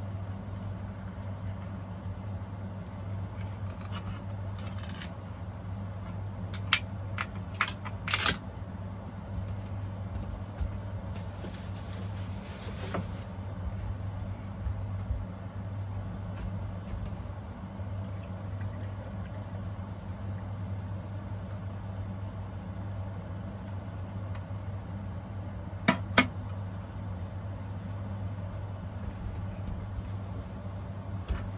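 A steady low hum throughout, with a few sharp clicks and knocks and a brief hissing rustle near the middle, as a package of cooked ham is opened and handled on a plastic cutting board.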